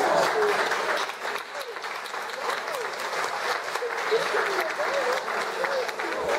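Audience applauding, many hands clapping, with voices talking over it; the clapping is loudest in the first second and eases after that.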